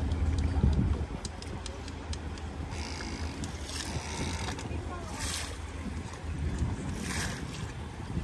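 Low, steady rumble of boat engines on harbour water, loudest in the first second, over a hiss of water and wind, with three brief hissing surges in the second half.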